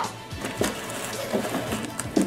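Background music playing, with a few light knocks as the top flaps of a cardboard carton are handled.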